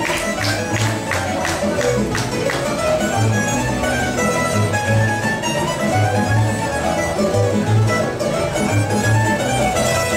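A tamburica folk band, small plucked lutes over a double bass, playing a lively dance tune, with a plucked bass line pulsing under the melody.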